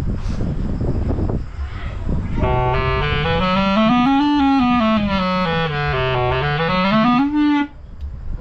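A reed wind instrument, likely a clarinet, blows one long note that slides smoothly up about an octave, down again and back up, then cuts off suddenly. A couple of seconds of rough, breathy noise come before it.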